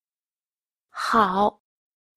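A single short spoken utterance, about half a second long, about a second in, with silence around it.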